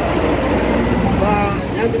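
A man speaking over a loud, steady low rumble of water churning through the flood-control gates, with wind on the microphone.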